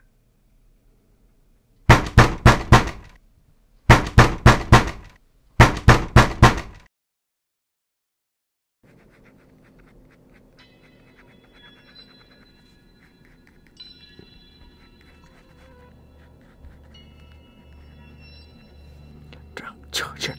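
Three bursts of rapid knocking on a door, four or five knocks in each, coming about two seconds apart. Faint music then comes in quietly and slowly grows.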